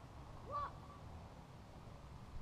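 One short, faint call about half a second in, over a steady low background rumble.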